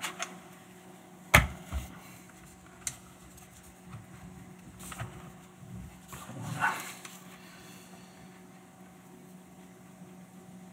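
Handling noise from a large telephoto lens in a neoprene cover being turned in the hands: one sharp knock about a second in, a few lighter clicks, and a short rubbing rustle about two-thirds of the way through.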